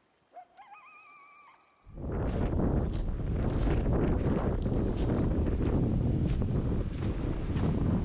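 A faint animal call early on: one note that rises and then wavers for about a second. About two seconds in, wind buffeting the microphone takes over as the loudest sound, with scattered sharp clicks through it.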